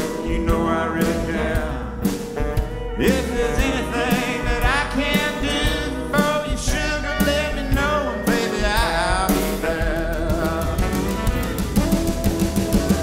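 Small band playing a slow blues instrumental passage, with saxophone, pedal steel guitar, strummed acoustic guitar and drums; pitched lines bend and slide over a steady beat.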